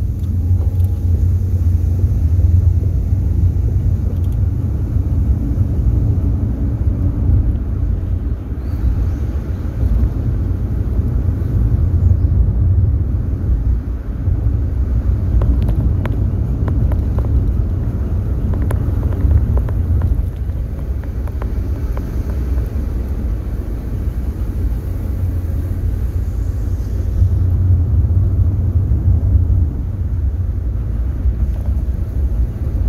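Steady low road and engine rumble heard inside the cabin of a moving van-type car, with a few faint clicks in the middle.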